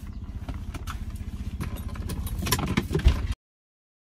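Mercedes-Benz 300CE's M104 straight-six idling, heard from inside the cabin, with clicks and a knock of something being handled near the end. The sound cuts off abruptly a little over three seconds in.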